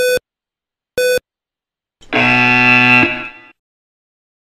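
Yo-Yo intermittent recovery test audio cues: two short electronic beeps a second apart, ending a countdown to the end of the recovery period. About a second later comes a louder, fuller buzzer tone lasting about a second and a half, which signals the start of the next 20 m shuttle.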